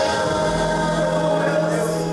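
Gospel worship music: singing over a backing track, with a steady low note held from about half a second in.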